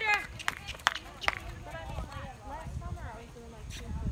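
Horses walking on arena sand: soft, low hoof thuds, with a few sharp clicks in the first second and a half.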